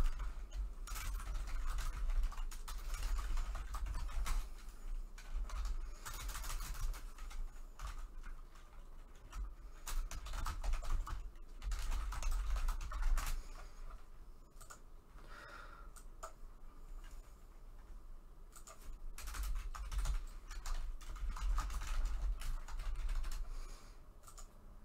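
Typing on a computer keyboard: irregular runs of key clicks broken by short pauses.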